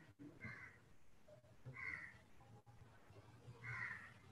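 A bird calling faintly, three short calls about a second and a half apart, over near silence.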